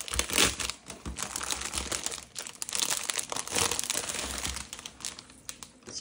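Clear plastic packaging sleeve crinkling in irregular bursts as hands open it and slide the paper kit items out of it, loudest just after the start.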